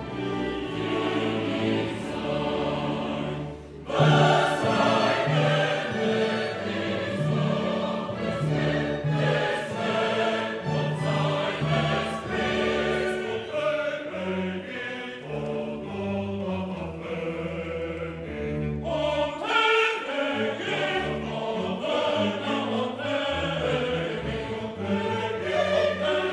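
Mixed choir singing with a symphony orchestra in classical style. The music thins briefly just before four seconds in, then the full choir and orchestra come in louder, and it swells again near the twenty-second mark.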